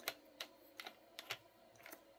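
A string of light, sharp metallic clicks, several in two seconds, as a thin cut-off disc and its flange nut are fitted by hand onto an angle grinder's spindle.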